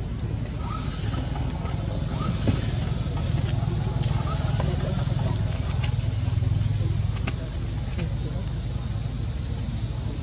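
Low, steady rumble of a motor vehicle engine running nearby, swelling a little around the middle, with faint voices and light clicks over it.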